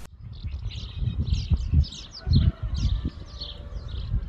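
Small birds chirping in quick, repeated short calls. An uneven low rumble of wind on the microphone comes and goes beneath them.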